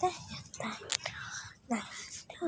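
A person's voice in two short syllables, one at the start and one near the end, with a sharp click about halfway through.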